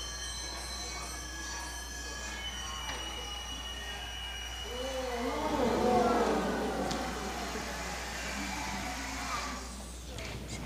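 Quiet room sound with faint steady high tones, and a brief low voice rising for a second or two about five seconds in.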